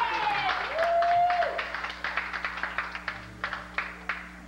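Club audience applauding, with a couple of long shouted cheers in the first two seconds; the clapping thins to a few scattered claps in the second half. A steady low hum from the sound system runs underneath.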